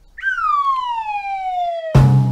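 A comic falling-whistle sound effect: one whistle-like tone glides steadily down in pitch for almost two seconds, then is cut off by a sudden loud hit at the very end.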